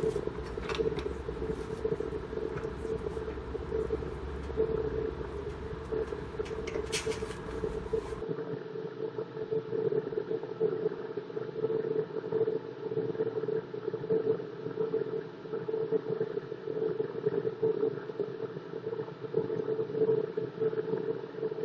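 A steady background hum with a low rumble under it that cuts off suddenly about eight seconds in; a brief faint rustle comes just before.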